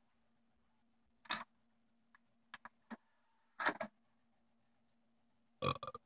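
A few light clicks and short knocks as an audio CD is loaded into a Coby portable TV/DVD player's disc drive, with a faint steady hum underneath. Near the end comes a short burp.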